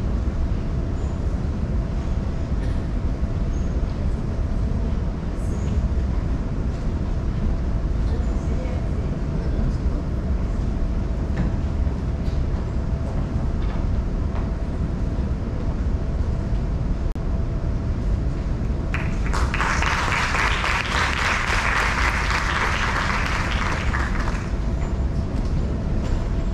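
A steady low rumble of hall noise with a faint steady hum, then audience applause starting about 19 seconds in and lasting about five seconds.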